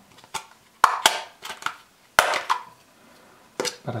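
Several sharp hard-plastic clicks and snaps as a small plastic spoon clipped to a plastic cup lid is handled, the loudest about one and two seconds in.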